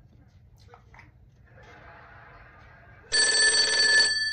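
Telephone ringing with a loud, fast bell-like trill that starts suddenly about three seconds in.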